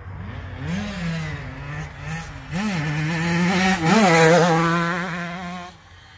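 Small KTM youth dirt bike's two-stroke engine running, with three quick revs between steady running. It grows louder through the middle and drops away just before the end.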